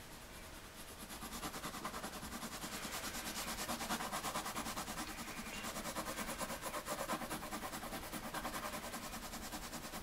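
A drawing tool shading rapidly back and forth on paper, filling in a solid dark area with quick, even strokes, several a second, growing louder about a second and a half in.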